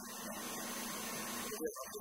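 A man speaking Spanish into a handheld microphone. For the first second and a half a steady hiss covers the sound, then his voice comes through clearly near the end.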